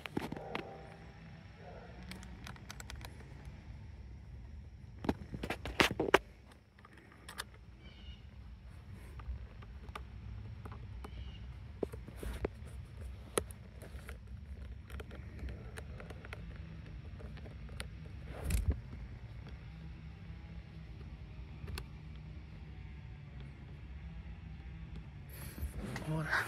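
Scattered clicks and knocks from handling a scan-tool cable and its plug, the loudest cluster about five to six seconds in, over a steady low rumble.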